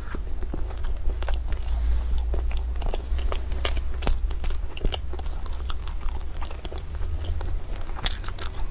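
Close-miked biting and chewing of flaky molten-custard pastries, with many short crisp crackles from the flaky crust, over a low steady hum.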